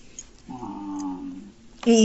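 A faint vocal sound held for about a second at a nearly steady pitch, in an otherwise quiet pause.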